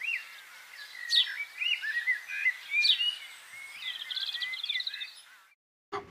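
A small bird chirping and whistling: quick, sharply falling whistles every second or two among short rising and falling notes, with a fast trill about four seconds in. The sound cuts off abruptly near the end.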